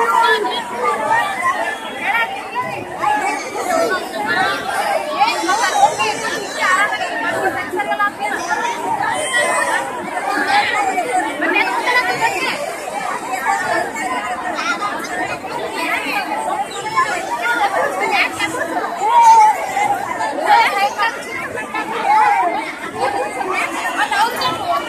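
A large crowd of people talking all at once: a continuous babble of many overlapping voices with no single speaker standing out.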